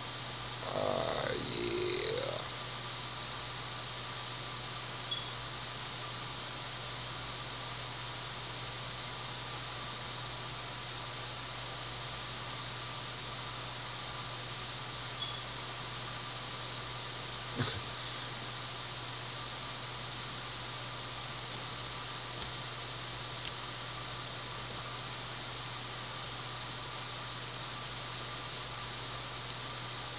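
Steady hiss with a low hum from the recording's own noise floor. About a second in comes a short voice-like sound whose pitch slides down and back up, and a few faint clicks follow later.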